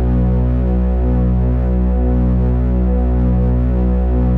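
Live electronic drone music from synthesizers: a dense, sustained low chord with no beat, its bass notes stepping to a new pitch about once a second.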